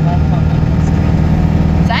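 Steady low engine and road drone inside a truck's cab while driving and towing a trailer.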